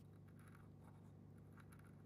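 Faint, irregular scratching of a hand-twisted drill bit cutting into a clear plastic crankbait lip, over a low steady hum.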